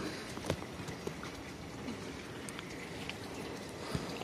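Faint outdoor background noise with a few scattered small clicks and ticks.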